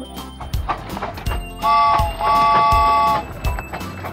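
Children's song backing music with a steady drum beat; about a second and a half in, a cartoon train whistle sounds twice, a short toot and then a longer one.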